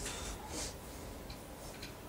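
Low room tone with a few faint, soft clicks.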